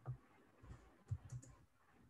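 Faint clicks of a computer keyboard and mouse: about six short taps, three of them in quick succession a little past the middle.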